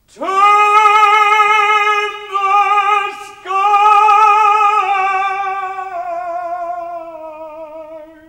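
An operatic tenor voice singing alone, without accompaniment. It holds a high note with vibrato for about two seconds, then a shorter note just below it. After a brief break comes one long note that steps slowly downward and fades near the end.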